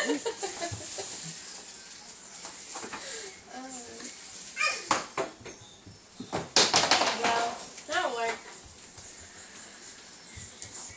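A few short bursts of wordless human voice: about three and a half seconds in, near five seconds, around seven seconds and again at eight seconds.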